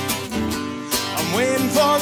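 Acoustic guitar strummed in a steady rhythm, easing off briefly, then a man's singing voice comes in over it about a second in as the chorus starts again.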